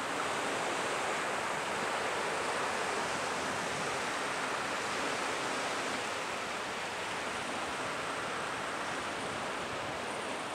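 Ocean surf washing up on a sandy beach: a steady rushing hiss of small waves running over the sand.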